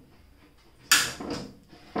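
Incra 1000SE miter gauge moved in the slot of a plywood table-saw mock-up. A sudden scraping knock about a second in fades over half a second, and a second sharp knock comes near the end.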